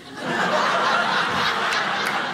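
Audience laughing together at a punchline, the laughter swelling up about a quarter second in and then holding steady.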